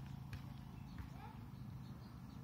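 Faint outdoor background with distant voices and a couple of light clicks.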